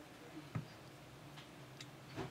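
Light clicks and taps of an opened smartphone's plastic frame being handled and set down on a work mat: one sharp click about half a second in, then two fainter ticks near the end.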